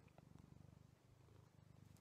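A domestic cat purring faintly, close to the microphone: a low, rapid throb that swells and dips with its breathing. It is a contented purr while the cat is being fussed.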